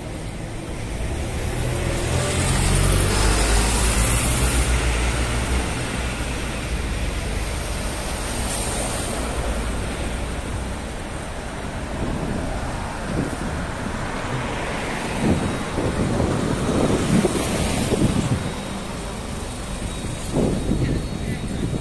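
Road traffic on a busy city street, a steady wash of passing cars and vans. A heavy vehicle rumbles past, loudest about two to five seconds in, and there are short louder sounds near the end.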